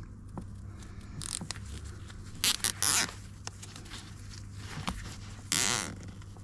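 Plastic cable tie being pulled tight around a car seat's wiring harness, its ratchet zipping in two short runs: about two and a half seconds in, and again near the end.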